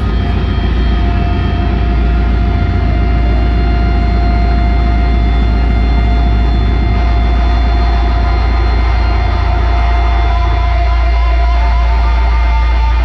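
Loud live band drone: a held, heavily distorted low chord or bass rumble through the PA, with a steady feedback whine from about a second in and no drum hits.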